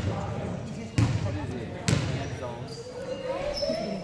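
A basketball bouncing on a hardwood gym floor, twice, about a second apart, echoing in the large hall.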